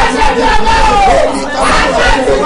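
Many voices praying aloud at once, loud and overlapping, in a group prayer.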